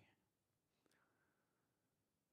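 Near silence: room tone, with one very faint tick a little under a second in.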